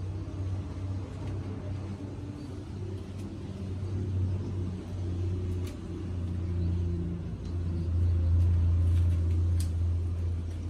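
A low, steady engine hum that swells louder near the end, with a few faint clicks.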